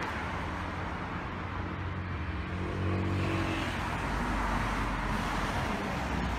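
Street traffic noise on a phone recording, with a car engine going by that is loudest about three seconds in.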